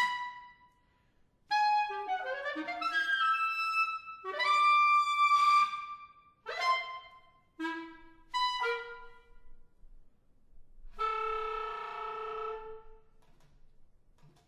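Solo clarinet playing fragmented phrases of a contemporary piece, with brief silences between them. There are quick runs and short detached notes in the first half, then a held note of about two seconds near the end that fades away.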